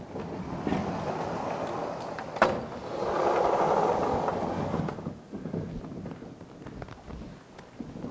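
Vertically sliding lecture-hall chalkboard panels being pushed up and pulled down past each other: a long sliding noise with a sharp knock about two and a half seconds in, louder for the next two seconds, then stopping about five seconds in.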